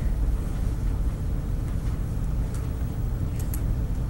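A steady low rumble with a faint steady hum over it, and a few faint sharp clicks in the second half.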